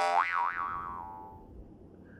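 A cartoon "boing" sound effect: a twangy tone that starts suddenly, wobbles up and down twice, and fades out over about a second and a half.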